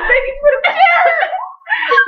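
A young woman's voice wailing in mock distress, high and sliding in pitch, breaking off briefly about one and a half seconds in before starting again.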